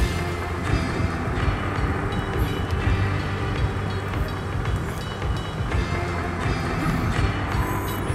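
Film soundtrack music with many sustained tones over a heavy, continuous low rumble.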